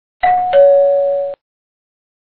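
Two-note ding-dong doorbell chime, a higher note followed by a lower one, held for about a second and then cut off abruptly.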